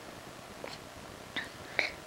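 An infant sucking and chewing on a plush toy duck, making a few faint, short wet mouth smacks.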